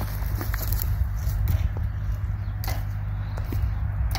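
Hand pruning shears snipping a vine, about three sharp clicks spread through the few seconds, over a low steady rumble.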